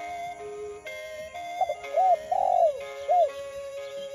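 A dove coos about halfway in: a few short rising-and-falling notes and a rolling trill. Steady background music plays under it throughout.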